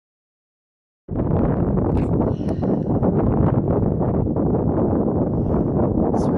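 Wind buffeting the camera's microphone on an exposed hilltop: a loud, uneven rumble that starts abruptly about a second in.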